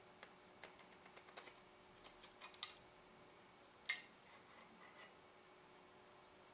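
Faint small clicks and light plastic handling noise as the outer plastic barrel of a Canon EF-S 17-85mm zoom lens is worked loose and slid off the lens body by hand, with one sharper click about four seconds in.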